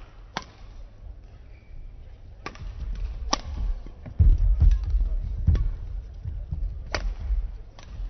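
Badminton rally: several sharp racket strikes on the shuttlecock, spaced a second or more apart, with heavy thuds of players' footwork on the court floor loudest around the middle.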